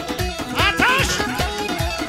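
Upbeat Kurdish dance music: a plucked string instrument and keyboard over a steady drum beat. A short gliding phrase rises above the band about half a second in.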